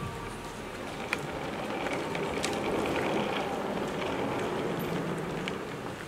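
Wheeled suitcase rolling across a wooden stage floor, a steady rumble that grows in the middle and eases off near the end, with a few sharp clicks.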